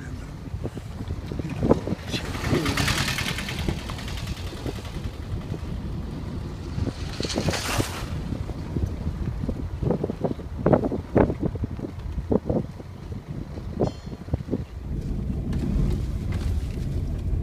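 Low rumble of a car driving along a rough dirt road, heard from inside the cabin, with wind buffeting the microphone. Two swells of hiss come about two and seven seconds in, and a string of short bumps follows near the end.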